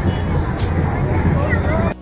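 Busy street noise: a steady low vehicle engine rumble mixed with people's voices talking, ending abruptly near the end.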